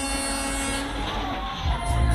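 Fairground ride machinery: a steady mechanical hum with a high hiss, then music with a heavy bass beat comes in near the end.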